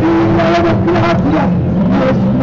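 Amplified song through an outdoor PA loudspeaker: a man singing long held notes over backing music.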